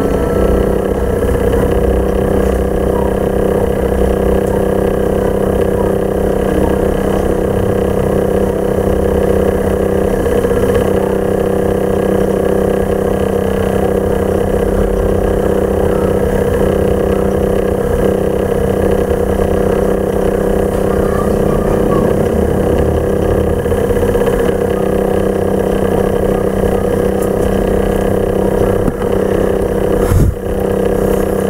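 A steady mechanical drone like an idling engine, holding one even pitch and level throughout, with no music.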